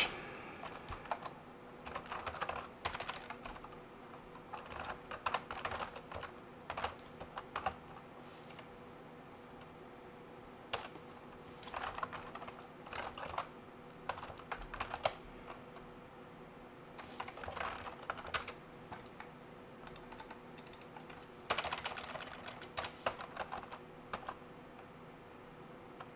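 Typing on a computer keyboard in several short bursts of key clicks with pauses between them, over a faint steady hum.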